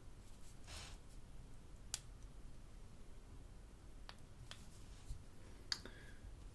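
Quiet room tone with a few faint, sharp clicks as two iPhone 5S phones are handled and their sleep/wake buttons pressed to power them on.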